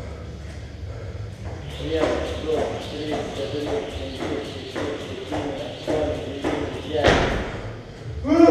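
Quick, even ticks and thuds about three times a second from a man jumping rope on a rubber gym floor. The jumping stops about seven seconds in with one loud burst of sound.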